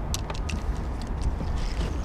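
Low rumble of wind on the microphone, with a few light clicks and taps, most of them early on and a couple more a little past the middle.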